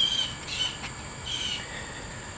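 Birds chirping: three short calls in two seconds, over a steady high-pitched insect drone.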